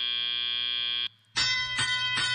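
FIRST Robotics Competition field buzzer marking the end of the autonomous period: a steady electronic buzz that cuts off about a second in. After a brief silence, the field's teleop-start bell chime begins, with two struck bell tones half a second apart.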